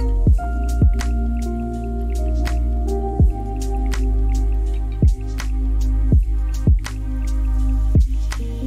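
Lofi hip-hop music: soft held keyboard chords over a slow beat of deep thuds that each slide down in pitch, with light ticking percussion on top.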